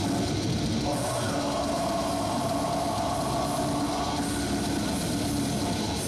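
Death metal band playing live, with heavily distorted electric guitars over a drum kit; a guitar note is held from about a second in until about four seconds in.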